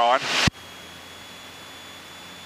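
The last spoken word is cut off by a sharp click about half a second in, like an aircraft intercom's squelch closing. After that only a steady low hiss with a faint thin high whine remains. The takeoff engine noise is not heard as such.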